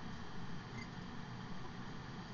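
Steady low background room noise, with one faint short squeak a little under a second in.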